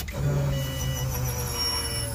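AEM 340 lph high-flow in-tank fuel pump in a 2003 Subaru WRX priming with the ignition switched on: a steady electric hum and whine that starts a moment in and runs about two seconds. Short high electronic beeps repeat alongside it.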